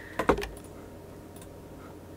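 A short cluster of quick clicks from operating the computer, about a quarter of a second in, over faint room tone.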